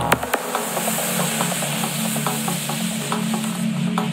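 Psychedelic electronic music in a breakdown: the bass drops out just after the start, leaving a hissing synthesized noise wash over a steady low synth drone, with scattered light clicks. Near the end the top of the hiss begins to close down.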